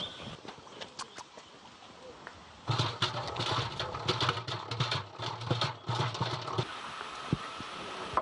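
Hand-cranked honey extractor spun to throw honey out of the uncapped combs. It rattles and clatters with a low hum for about four seconds, starting a few seconds in, after a few scattered clicks.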